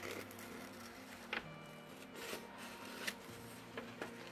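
Faint handling of a paper sheet on a table, rustling and sliding, with a few light clicks.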